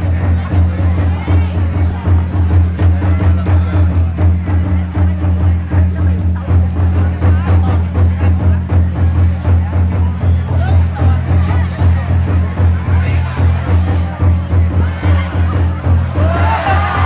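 Traditional wrestling drum beaten in a fast, steady rhythm to drive the bout on, over the murmur of a crowd.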